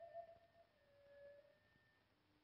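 Very quiet music from a phonograph record: a held note that steps down to a lower one a little under a second in.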